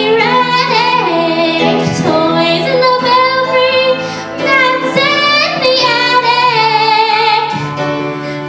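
A teenage girl singing a solo into a microphone over instrumental accompaniment, holding long notes that waver in pitch.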